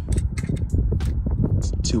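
Short clicks and rustles of a steel tape measure being handled against a metal roof rack, over a steady low rumble.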